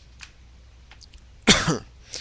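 A man coughs once, sharply, about a second and a half in, after a pause with only faint room hiss.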